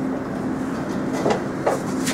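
Wire mesh welding machine running with a steady hum, with a few light metallic clinks of the steel wire mesh as it is handled and moved along, two of them past the middle.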